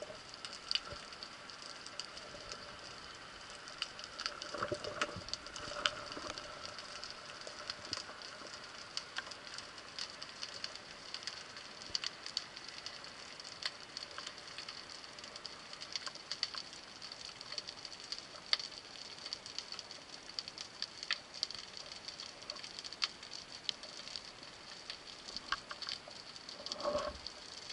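Underwater ambience over a rocky seabed, picked up through a camera housing: a steady fine crackle of many small scattered clicks, with a faint low rumble around five seconds in.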